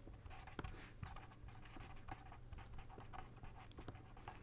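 Faint scratching of a pen writing on paper, a run of short irregular strokes, over a low steady hum.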